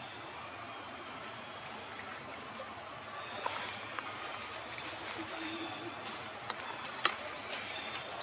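Shallow pond water sloshing and trickling around wading macaques over a steady outdoor hiss, with a few sharp clicks, the sharpest about seven seconds in.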